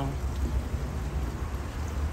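Hot tub jets churning the water: a steady bubbling water noise with a low rumble underneath.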